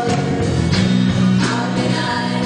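Live church worship band playing a song: singing voices and guitar over drum hits that fall roughly every two-thirds of a second.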